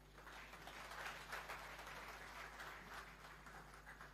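Audience applauding faintly, swelling in the first second or so and tapering off toward the end.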